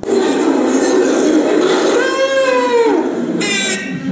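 Soundtrack of a classroom video played over the room's speakers: busy room noise, with a young child's high voice in one long call that drops in pitch about two seconds in, and a brief higher cry near the end.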